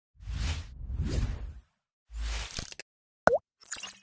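Logo-animation sound effects: whooshing swells in the first second and a half and again after two seconds, then a short, sharp pop whose pitch dips and springs back about three seconds in, the loudest sound here, followed by a brief bright shimmer as the logo settles.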